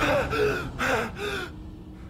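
A young man gasping in panic, about four sharp voiced gasps in quick succession that stop about one and a half seconds in: jolting awake from a nightmare.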